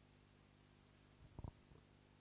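Near silence: a low steady room hum, broken by one brief low thump about a second and a half in.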